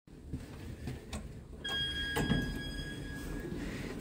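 An Evans passenger lift's chime rings once about one and a half seconds in: a single bell-like tone that holds and fades over about two seconds. A few short clicks come before it, over a low rumble.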